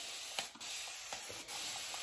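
Shaving brush being swirled in a tub of shaving soap to load it, a steady brushy hiss broken by short pauses about half a second and a second and a half in.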